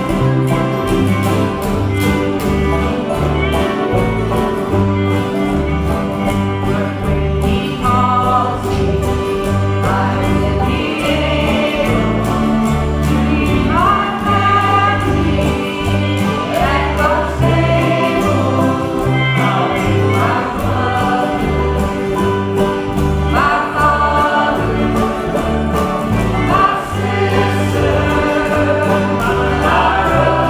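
Acoustic folk band of fiddle, banjo and acoustic guitars playing a song, with a woman's lead vocal coming in about eight seconds in and continuing.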